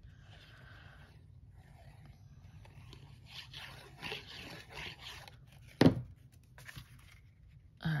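Tip of a liquid-glue bottle scraping and dabbing across the back of an embossed cardstock panel, with soft paper rustles; the scraping is busiest in the middle. A single short loud click comes about six seconds in.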